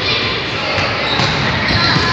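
Indoor football being played in an echoing gym: the ball bouncing and being kicked on the wooden floor, with faint shoe squeaks and players' voices calling.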